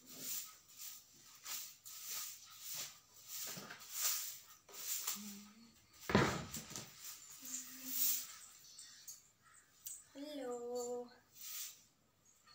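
Hand broom sweeping a floor in a quick run of short swishes, about two a second, with a louder thump about six seconds in. Brief voice-like tones come between the strokes, the longest near the end.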